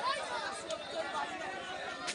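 Crowd chatter: many men and boys talking at once in an overlapping babble of voices.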